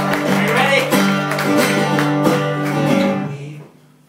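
Acoustic guitar strummed hard in steady strokes, full chords ringing, then cut off about three and a half seconds in, leaving near quiet.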